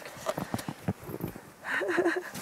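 Irregular crunching and rustling from snow and a snow-covered tent's canvas being handled and stepped around in deep snow, with a short voice sound near the end.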